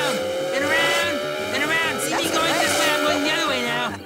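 Race-car engine sound effect for a speeding toy racer: a steady engine whine that slowly climbs in pitch as it accelerates, overlaid with repeated short tyre-squeal screeches as the car skids around in circles on dirt.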